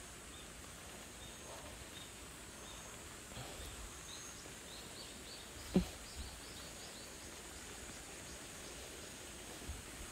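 Quiet outdoor ambience: a small bird chirping in quick, slightly rising series over a steady high-pitched hum, with one short low thump about six seconds in.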